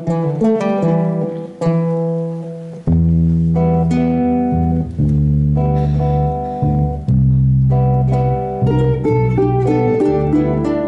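Ukulele orchestra playing strummed and plucked chords together, with a bass line coming in strongly about three seconds in.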